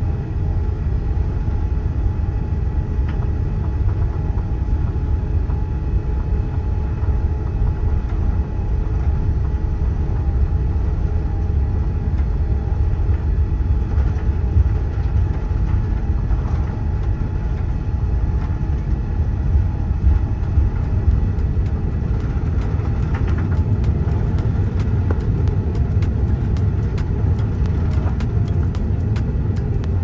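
Airbus A380 takeoff heard from inside the cabin: a loud, steady, deep rumble of the Rolls-Royce Trent 900 engines at takeoff thrust as the jet rolls down the runway and lifts off, with a faint steady engine tone over it. Light quick ticks crackle through the second half.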